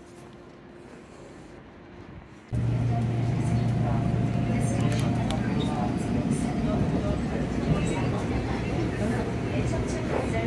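Interior of a moving Seoul subway Line 1 train: the steady rumble and low hum of the car running on the rails, with scattered clicks and rattles. It starts abruptly about two and a half seconds in, after a quiet stretch.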